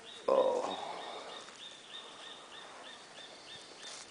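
A bird repeats a short, high chirp steadily, about three times a second. About a third of a second in, a sudden loud brushing noise fades away over the next second.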